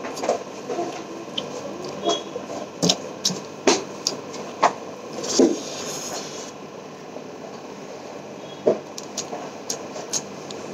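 Close-up eating sounds from a person eating rice and mixed vegetable curry by hand: chewing and wet mouth smacks, with short sharp clicks scattered through, over a steady background hiss.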